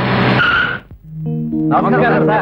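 A jeep braking and skidding to a stop: a rush of tyre noise with a high squeal, cutting off suddenly about a second in. Background music follows, with a voice over it near the end.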